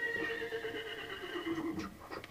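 A horse whinnying: one long, wavering call that starts suddenly and drops in pitch near its end, followed by a few sharp clicks.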